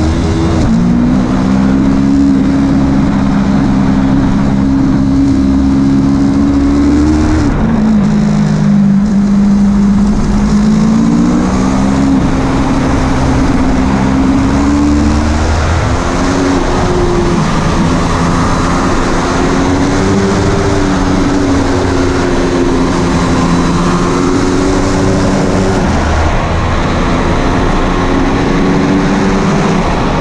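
Yamaha R3 sport bike's parallel-twin engine running hard on a fast track lap, heard from an onboard camera with wind rushing past. The engine note holds steady, drops sharply about seven seconds in, then climbs back up in steps and dips again briefly near the end.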